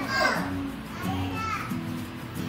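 Young children's voices chattering in a classroom over background music with steady low sustained notes.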